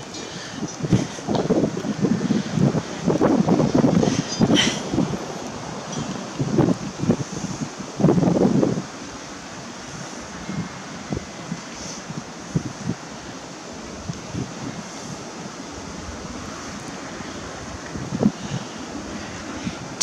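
Wind buffeting the camera microphone in gusts for the first nine seconds or so, then settling to a steadier, quieter rush.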